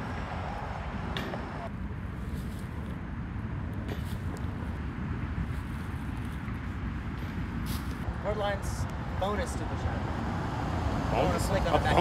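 Steady low outdoor background rumble, with faint voices in the last few seconds.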